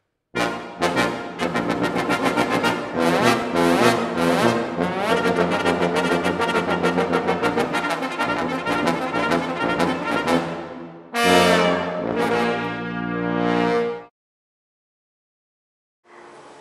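Brass quintet of two trumpets, horn, trombone and tuba playing a fast passage of rapid, short notes. About eleven seconds in it moves into loud held chords, which cut off sharply near the end.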